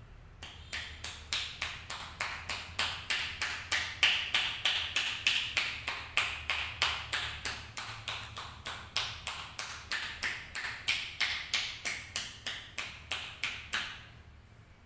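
Hands patting rhythmically on a wet scalp in a shampoo head massage: a steady run of sharp pats, about three to four a second, stopping suddenly near the end.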